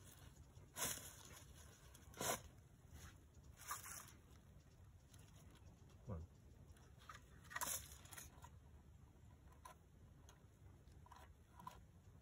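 A few short, faint rustles and crunches of dry leaves and litter, spaced out over otherwise near silence, as the hawk and snake shift and struggle on the leafy ground.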